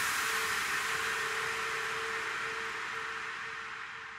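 A hissing white-noise wash left ringing at the very end of a drum and bass track after the beat stops, slowly fading out and growing duller, with a faint held tone beneath it.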